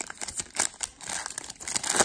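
Foil wrapper of a baseball card pack crinkling and tearing as it is ripped open by hand: a rapid run of crackles, with a louder crackle near the end.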